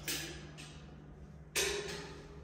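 Two sharp clicks, the louder one about one and a half seconds in, each with a short echoing tail: a light switch being pressed in a small tiled bathroom.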